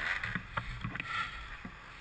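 A few scattered light knocks and rustles as a Kawasaki dirt bike is handled and pulled upright in snow, over a faint low rumble.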